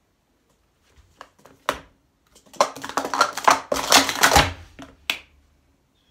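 Plastic sport-stacking cups clattering in a fast run of about two seconds as three stacks of three cups are stacked up and down (a 3-3-3 sequence), with a few light taps before it and one after.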